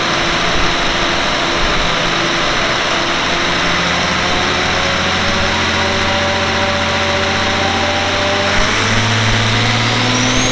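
Air-cooled Deutz V12 diesel with four turbochargers running loudly and steadily on a chassis dyno. Its note steps up slightly in pitch about eight and a half seconds in as the engine speed rises.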